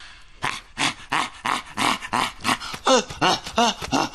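Rapid run of short, high, animal-like vocal yelps, about three a second, each rising and falling in pitch, from a film soundtrack excerpt.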